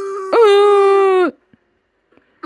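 A child-like puppet character's voice wailing in two long, steady-pitched cries, the second louder and dropping away about a second and a half in. It is heard through a laptop's speakers.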